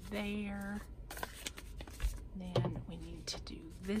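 A woman's voice murmuring or humming twice on a held pitch, with light handling taps and clicks from paper and craft tools between.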